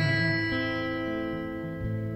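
Instrumental passage of a rock-blues ballad: a guitar chord rings out and slowly fades, with a lower note joining about half a second in.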